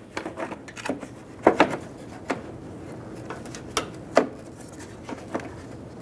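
A plastic headlight bracket being fitted to a headlight assembly: scattered light clicks and knocks of plastic on plastic, the sharpest about a second and a half in and again about four seconds in.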